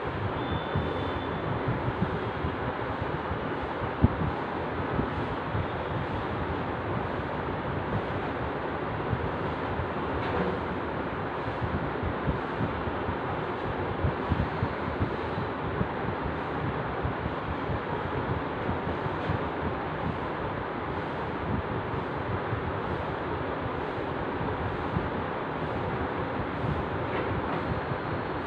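Steady rushing background noise with a few faint knocks, the sharpest about four seconds in.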